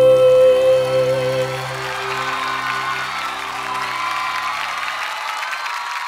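A female singer holds the last note of a slow pop ballad over the band, the note ending about a second and a half in. The accompaniment then dies away about five seconds in while audience applause and cheers build.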